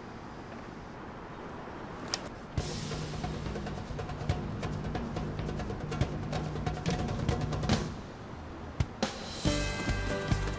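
Background music from a drama score. After a quiet opening, a drum-led cue with a steady low bass line comes in about two and a half seconds in. It dips briefly near the end, and then a new passage begins.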